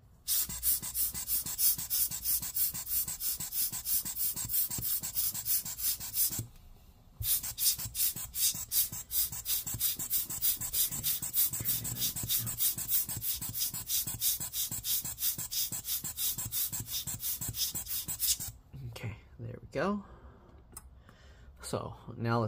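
Rubber hand air blower bulb squeezed rapidly over a laptop logic board, giving a quick run of hissing puffs of air, with a short pause about six seconds in, stopping a few seconds before the end. It blows isopropyl alcohol and water off the board to dry it.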